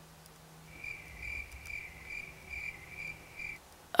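Cricket chirping: a quick, even run of high chirps, about two or three a second, starting about a second in and stopping shortly before the end, over a faint low hum.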